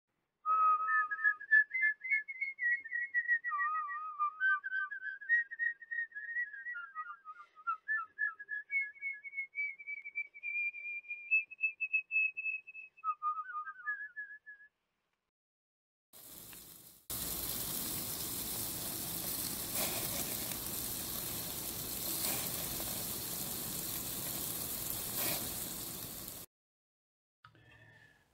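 A tune whistled solo, one melodic line of gliding notes, for most of the first half. Then, after a short gap, a steady sizzle of hamburger patties cooking over an open flame on a portable gas grill.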